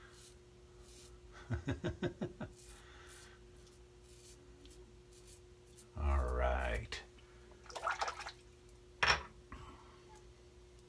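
Merkur 37C slant safety razor scraping through lathered stubble in short strokes, with a man's brief chuckles between them and a faint steady hum.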